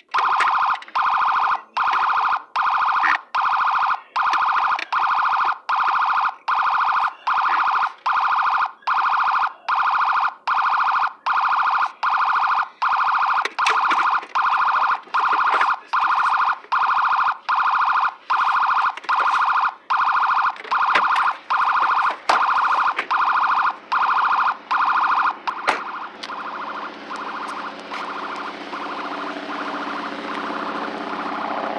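Loud electronic warning tone beeping at one steady pitch, about three beeps every two seconds, cutting off suddenly near the end; a quieter low steady hum follows.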